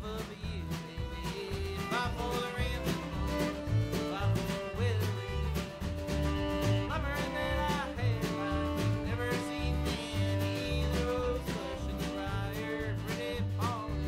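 Country band playing live: fiddle, acoustic guitar, upright bass and drums. The bass steps through low notes under long held and sliding fiddle notes, with steady strums and drum hits.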